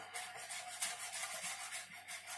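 Chef's knife mincing leek into brunoise on a plastic cutting board: a quick, even run of light taps of the blade against the board.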